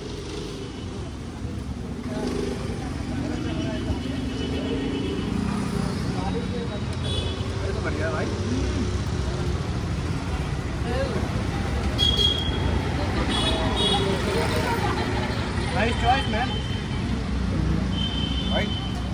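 Steady city-street traffic noise: cars running past close by, getting louder over the first couple of seconds, with faint voices in the background.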